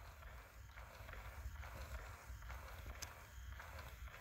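Faint rhythmic clicking, about twice a second, over a low hum: the motor and gear mechanism of a Rock Santa dancing figure running as it dances, driven through an H-bridge and a 555 timer that switch the motor's direction.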